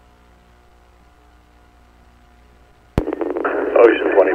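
Police radio channel: a faint steady hum with a few thin steady tones. About three seconds in, a sharp click marks a transmission keying up, and a tinny, narrow-band radio voice begins.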